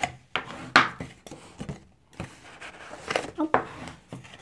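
Bone folder drawn firmly along scored folds in cardstock: dry scraping of the folder on the paper, with several short, sharp strokes, the loudest a little under a second in.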